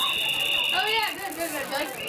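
Referees' whistles blowing the play dead after a tackle: two steady high whistle tones at slightly different pitches overlap and stop about a second in, then one brief whistle sounds near the end. Sideline voices carry on underneath.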